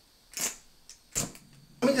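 Two short, sharp scraping strikes about a second apart: a flint-and-steel striker being struck to throw sparks at a butane canister stove to light it.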